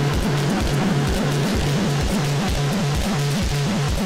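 Electronic music played live on hardware: a fast, steady kick drum under a repeating bass line, with a dense, noisy layer on top.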